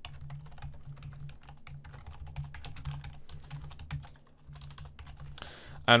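Typing on a computer keyboard: a run of quick, irregular key clicks over a low steady hum.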